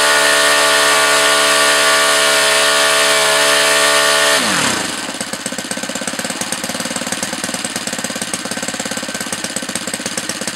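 O.S. GF40 single-cylinder four-stroke gasoline model-aircraft engine turning an 18x8 propeller at full throttle, a loud, steady high-pitched drone at about 8,650 RPM. About four and a half seconds in, the revs drop quickly and the engine settles into a lumpy, irregular idle.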